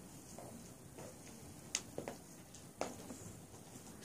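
Quiet room tone with three faint, sharp clicks in the second half, the first two close together and the third a little under a second later.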